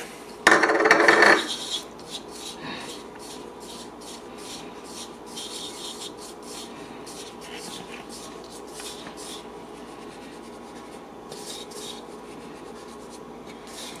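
Fingers stirring and rubbing a flour, salt and pepper mix in a small clear bowl: soft, scratchy rubbing strokes, coming thick and fast. A short louder rush comes about half a second in.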